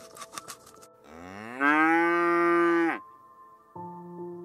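A cow moos once: a long call that starts about a second in, rises in pitch, holds for over a second and drops off at the end.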